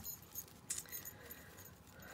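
A small metal jingle bell on a crocheted doily ornament jingling faintly as the piece is handled, with soft rustling of an organza bag and a light click about three quarters of a second in.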